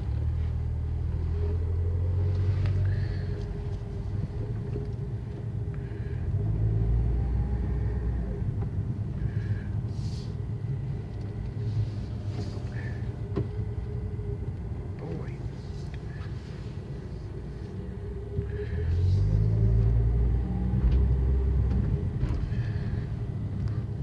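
Car engine and tyre rumble heard from inside the cabin as the car drives slowly. It swells a few times as the car picks up speed.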